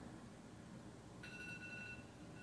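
Near silence: faint room tone, with a faint steady high electronic tone that comes in a little past halfway.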